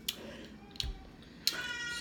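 A young child crying in the background: a short, high-pitched wail near the end, with a few light clicks before it.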